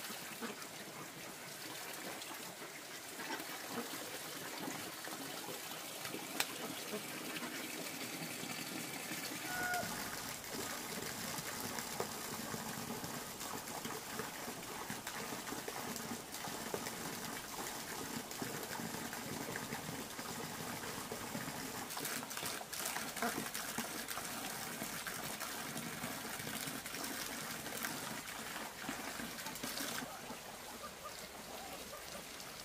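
Water trickling steadily, with small handling and footstep sounds; partway through, dry ground feed is shaken from a sack into a plastic basin.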